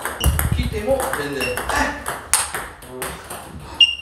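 Table tennis ball being hit back and forth, with sharp clicks of the ball off the bats and the table. A bright, ringing ping just before the end is the loudest hit.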